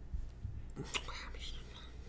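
Faint whispering, with a soft breathy burst about a second in, over a steady low hum.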